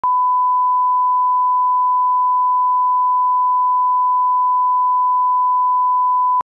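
A steady 1 kHz reference tone from colour bars and tone, one pure pitch held unbroken.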